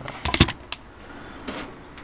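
A quick clatter of clicks and knocks, the handheld camera being handled and set down on a wooden desk, followed by two lighter clicks and then steady room noise.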